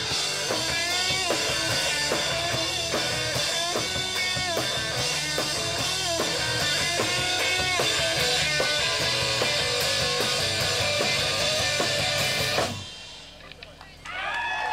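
Rock music with electric guitar and drums, cutting off suddenly about a second before the end.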